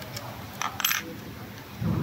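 Small hard clicks and rattles of plastic connectors and wiring being handled inside a scooter's electronics compartment, clustered about halfway through, then a short dull knock near the end.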